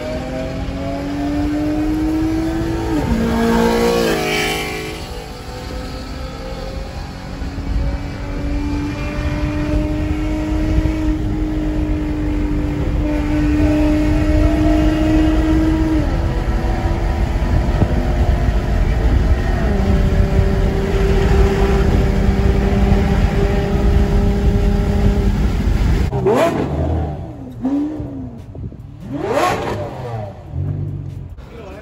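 Car engine pulling through the gears, heard from inside a car: a steady note climbs slowly in pitch and drops at each upshift, about three seconds in and again about sixteen seconds in, then holds level. Near the end the sound cuts to quick rising and falling revs.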